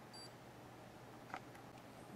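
A short, high electronic beep from a RigExpert AA-54 antenna analyzer just after the start, then a faint click about two-thirds of the way through, as a button on the analyzer is pressed. Otherwise low room noise.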